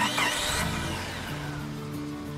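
Short music sting: a whooshing sweep that falls in pitch over about a second and a half, over held synth chords.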